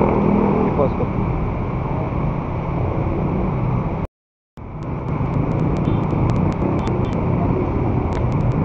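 Motorcycle engine idling steadily amid street traffic, with the sound cutting out completely for about half a second around four seconds in.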